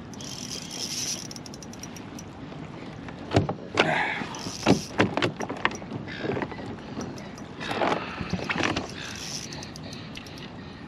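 Fishing gear being handled on a kayak while a hooked fish is played on a spinning reel. There are sharp clicks and knocks in the middle and a few short noisy rustles or splashes near the end.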